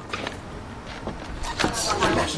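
Background ambience with scattered short clicks and knocks and indistinct voices, growing busier near the end.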